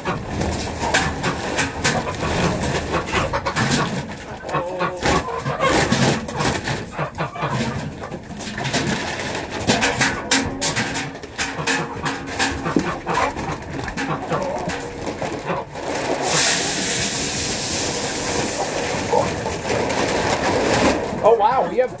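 A flock of chickens clucking and squawking loudly at feeding time, over many irregular clicks and rattles as feed is tipped out. A steady hiss runs for about five seconds near the end.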